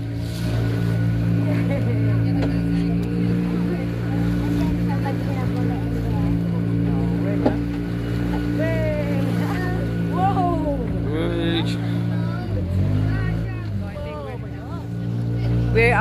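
Small open tour boat's engine running steadily under way, with a brief drop in pitch a little past the middle before it picks back up.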